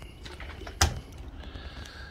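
Plastic chick waterer set down: one sharp knock a little under a second in.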